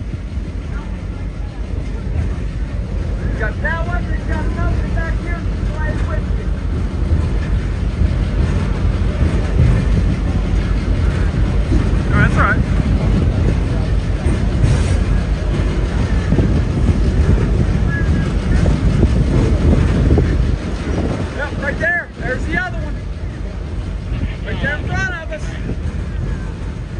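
Steady low rumble of a moving passenger train, with wind on the microphone. Voices of people talking in the background come through about 4 seconds in, again around 12 seconds and from about 21 seconds on.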